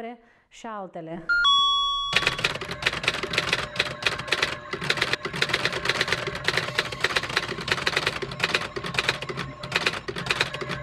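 A short bell-like chime about a second and a half in, then a typewriter sound effect: rapid, even key clicks, several a second, going on steadily.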